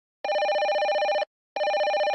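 Telephone ringing sound effect: two rapid trilling rings, each about a second long, with a short pause between them.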